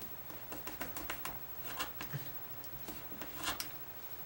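A knife cutting through rope against a workbench: a run of short, irregular clicks and scrapes.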